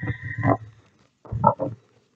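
A woman's short wordless vocal sounds: a drawn-out hum at the start, then two brief hums in quick succession about a second and a half in.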